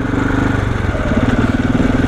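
KTM 690's single-cylinder engine running as the bike rides along, its pulsing note dipping about half a second in and picking back up about a second in.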